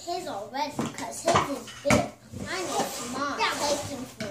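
Young children talking indistinctly, with two sharp clacks about one and a half and two seconds in, typical of large plastic building blocks knocking together or onto the table.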